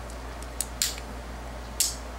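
Vintage Thorens automatic lighter being worked by hand: a couple of short metallic clicks a little over half a second in, then a sharper scrape near the end as the push lever spins the strike wheel against the flint and the lighter catches.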